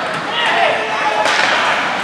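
Ice hockey play on the rink: skate blades scraping the ice under a steady wash of rink noise, a sharp stick-on-puck clack about a second in, and a player shouting near the start.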